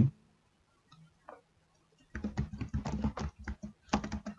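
Typing on a computer keyboard: a quick run of key clicks that starts about halfway in, after a near-silent opening.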